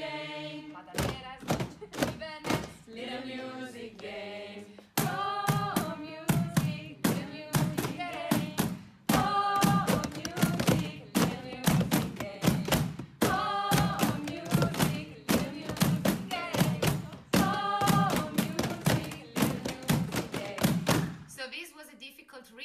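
A group singing a short chant together while striking a rhythm with their hands on chairs, copying a rhythm set by one player in the middle; the rhythm is hard to coordinate with the singing. The singing and knocks get louder about five seconds in and stop just before the end.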